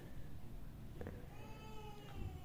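A faint, high-pitched, drawn-out cry that falls slightly in pitch about a second and a half in, after a light click.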